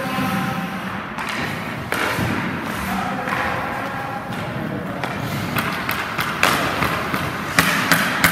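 Ice hockey pucks and sticks striking: sharp knocks of puck on stick, pads and boards over the scrape of skates on ice, the knocks coming thicker near the end.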